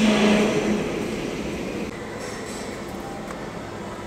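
Isuzu 3AD1 three-cylinder diesel engine running, loudest in the first second and then settling to a steady level.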